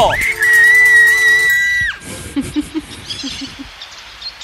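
A person's long, shrill, high-pitched scream, held steady for about two seconds with a quick rise at the start and a drop at the end. Faint bird chirps follow in the second half.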